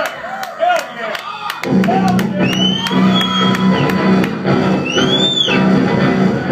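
Live heavy rock band starting a song: a sparse opening of sliding guitar notes, then about a second and a half in the full band comes in with distorted electric guitars and drum kit. High rising-and-falling guitar squeals cut through twice.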